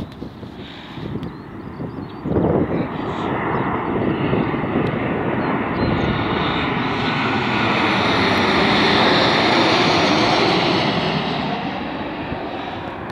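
Boeing 737-800 jet airliner's CFM56 turbofan engines on final approach, flying low overhead: the jet noise jumps up sharply about two seconds in, grows to its loudest as the plane passes, and begins to ease near the end.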